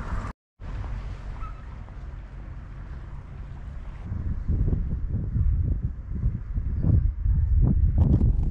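Wind buffeting the camera microphone: a low rumble that swells in gusts, stronger in the second half. A brief silent gap comes just after the start.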